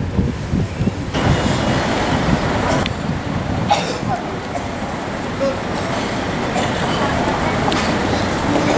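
City street traffic going by, with faint voices in the background. In the first second, wind buffets the microphone before the sound changes to the steady traffic noise.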